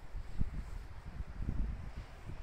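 Low, uneven rumble of wind buffeting a handheld camera's microphone, with a faint knock of camera handling about half a second in.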